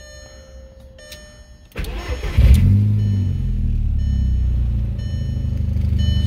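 Turbocharged VW 1.8T four-cylinder engine starting about two seconds in: a short crank, a brief flare of revs, then a steady idle.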